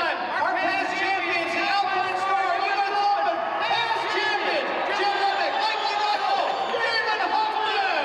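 A man speaking into a handheld microphone, amplified over a public-address system.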